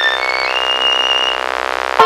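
Band holding one long sustained, buzzy chord while a fiddle climbs in short steps to a high held note; plucked strings start again right at the end.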